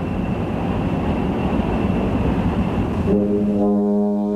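Steady roar of cabin noise inside a KC-135 jet in flight, with a faint high whine. About three seconds in it gives way to music: sustained brass chords.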